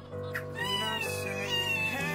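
A newborn baby's thin, high cry, one drawn-out wail starting about half a second in, over soft guitar music.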